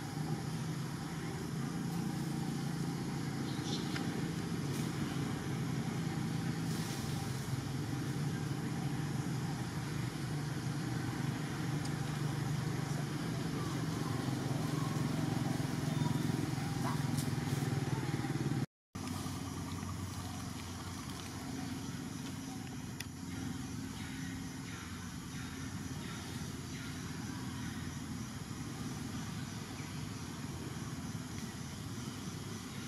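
A steady low rumble throughout, with a brief dropout to silence about two-thirds of the way through.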